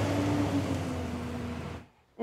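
Ambulance driving past: steady engine rumble and road noise, with an engine tone that drops slightly in pitch. The sound cuts off suddenly near the end.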